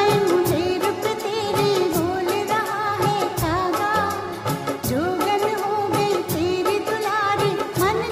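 Old Hindi film song: a singing voice carrying a wavering melody over instrumental backing, with percussion keeping a steady beat.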